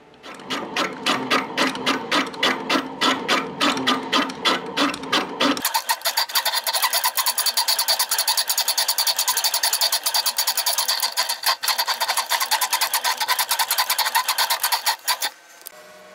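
A thin cutting disc on a motor-driven spindle cutting a slot into the end of an 8 mm steel threaded rod. It pulses about five times a second at first. About six seconds in the sound turns higher and thinner, with a much faster pulse, and it stops just before the end.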